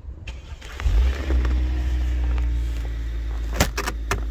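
A car engine starting about a second in and then running steadily at idle, followed near the end by a few sharp clicks from the snow-covered door handle and latch.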